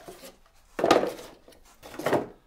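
Cardboard packaging being handled, with a short rustling scrape about a second in and another near the end.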